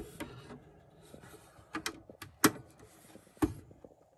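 Handling noise from a plastic cassette boombox: about six short clicks and taps, the loudest about two and a half seconds in.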